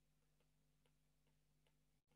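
Near silence, with a few faint ticks of a stylus tapping on a tablet screen during handwriting.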